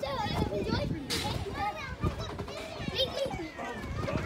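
Children playing: high children's voices calling and chattering, with soft thumps from bouncing on trampoline beds.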